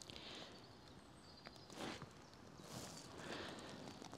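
Quiet woodland with two short rustles, about two and three seconds in, of a person shifting on the leaf-covered forest floor.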